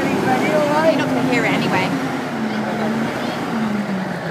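Several people talking and chatting at once nearby, their voices overlapping.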